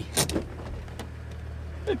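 A 4WD's engine idling steadily, heard from inside the cab, with a few sharp clicks early on.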